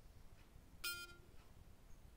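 A short electronic beep about a second in from the Amazfit Verge smartwatch's small speaker, which had water in it, as Alexa stops listening and starts processing the request; otherwise near silence.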